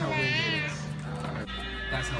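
A high, wavering, squeal-like voice in the first second, typical of a small child, then steady background music from about one and a half seconds in.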